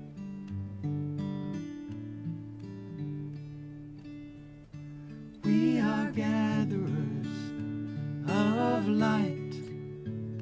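Acoustic guitar playing sustained chords. About halfway through, two louder wavering melodic phrases come in over it, the second shortly after the first.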